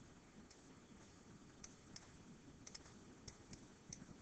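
Near silence: room tone with about eight faint, scattered clicks and taps from writing numbers on screen with a digital pen tool.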